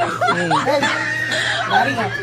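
People talking with chuckling laughter, over a steady low hum.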